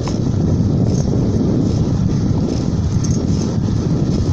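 Wind buffeting a phone's microphone outdoors: a loud, steady, low rumble with no pitch to it.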